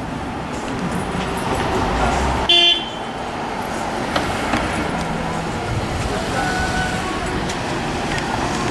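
Street traffic running steadily, with one short, loud car-horn toot about two and a half seconds in.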